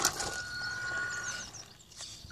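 Electric RC buggy pulling away across gravel: a brief burst of tyre and gravel noise, then a steady high motor whine that stops about one and a half seconds in. Birds chirp faintly.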